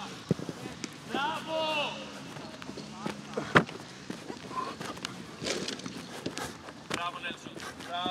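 Footballs being struck on a grass training pitch: short sharp thuds, a small one just after the start and the loudest about three and a half seconds in.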